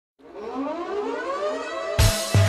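Siren-like sound effect opening a dance track, gliding steadily upward in pitch after starting a moment in.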